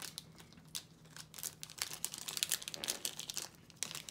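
Foil booster-pack wrapper crinkling in irregular crackles as it is handled and torn open.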